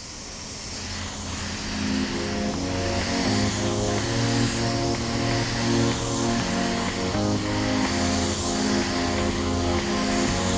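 Background music fading in over the first two seconds: sustained chords over a deep bass line with a steady beat.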